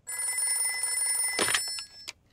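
A telephone ringing with a steady, trilling electric bell. The ringing stops near the end, with a brief clatter as the receiver is picked up.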